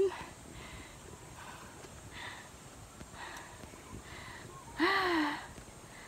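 Faint breathing of someone still out of breath, a few soft breaths about a second apart, then a brief rising-and-falling vocal sound near the end.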